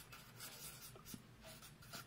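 Faint scratching of a marker pen on paper as a word is handwritten, in a series of short strokes.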